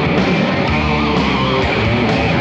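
Hard rock band playing live: distorted electric guitars over bass and drums with cymbals, in a stretch without vocals.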